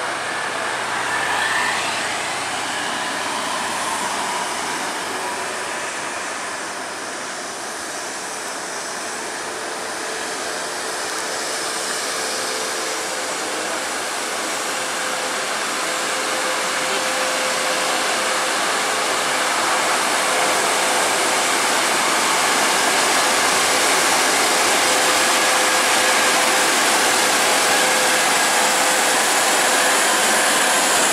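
Diesel engines of two intercity coaches, one a Mercedes-Benz, pulling up a steep climb. It is a steady rushing engine noise that grows louder as the buses draw near.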